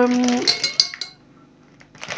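The end of a woman's long, level 'euh' of hesitation, then a few light clinks about half a second in, and a quiet stretch.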